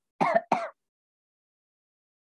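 A man briefly clearing his throat in two quick bursts near the start.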